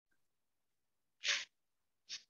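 A single short, sharp breathy burst from a person, about a quarter second long, a little over a second in, heard through a video-call microphone.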